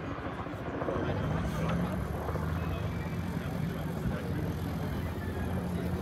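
Bell UH-1D Huey helicopter on the ground with its main rotor turning and its Lycoming T53 turboshaft running, a steady low rotor beat. It gets slightly louder about a second in.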